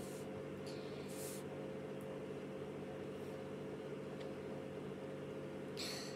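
Quiet indoor room tone: a steady low electrical or appliance hum, with one brief soft hiss about a second in.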